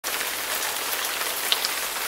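Steady rain falling, an even patter of drops.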